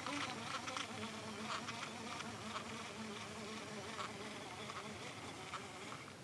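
A flying insect buzzing, its fairly low hum wavering in pitch as it moves about, with a few faint light clicks scattered through.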